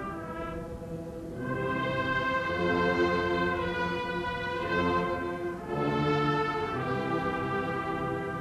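Slow, solemn orchestral music of long-held notes, accompanying a moment of silence, with brief lulls between phrases.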